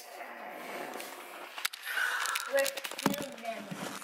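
Faint, indistinct voices with soft rustling and a few sharp clicks.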